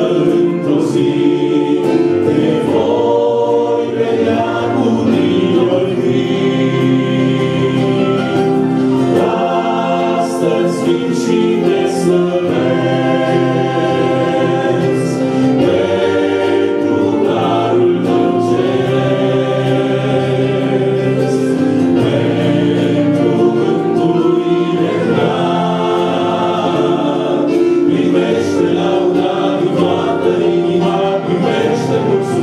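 Choir singing a Christian hymn, several voices together on long held notes.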